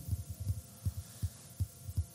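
Soft, irregular low thumps, about five or six, over a faint steady hum.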